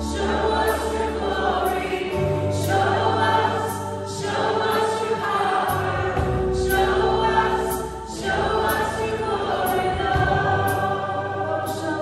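Live worship band playing and singing a song: sung vocals over acoustic and electric guitars, violin, bass guitar and drum kit, with cymbal strokes keeping a steady beat and the bass moving to a new note every couple of seconds.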